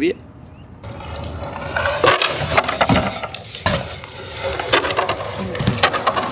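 BMX bike tyres rolling fast over rough asphalt up a banked wall, a rushing hiss that builds after a quiet first second, with several sharp knocks from the bikes hitting the wall and landing.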